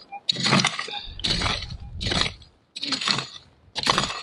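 A prospector's pick striking and scraping into hard, stony ground about once a second, five strokes in all, with stones clinking as the dirt is broken up to dig out a metal-detector target.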